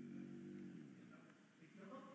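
Near silence: room tone in a pause between spoken phrases, with a faint, brief voiced sound in the first half second or so.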